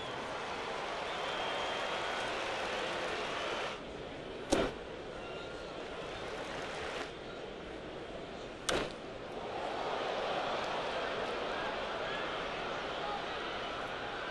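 Ballpark crowd noise with two sharp cracks, one about four and a half seconds in and one about eight and a half seconds in. The second crack is a bat hitting a pitch and lifting a fly ball to left field, and the crowd gets louder after it.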